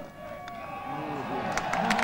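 A cricket bat strikes the ball with a single sharp crack at the very start, then the crowd noise swells steadily, with shouts and rising applause for a good attacking shot.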